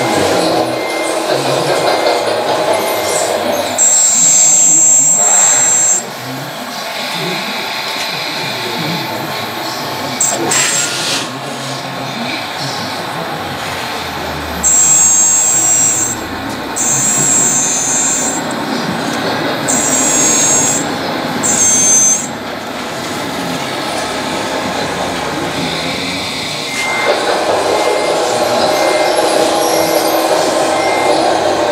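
Electric hydraulic pump of a 1/14.5-scale RC forklift whining in high-pitched bursts of one to two seconds as the forks are lifted and tilted: once about four seconds in, then four times in quick succession midway. Background crowd chatter runs underneath.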